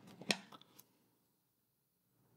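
Small fly-tying scissors snipping: a few quick clicks in the first half second, the loudest about a third of a second in.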